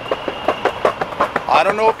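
Boosted electric skateboard rolling on a sidewalk, its wheels making a racket of rapid, irregular clicks and clatter. One of its drive belts is not tight enough, which the rider blames on his own belt change.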